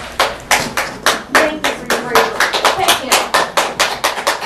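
Audience applauding, with separate claps heard at several a second and some voices under them.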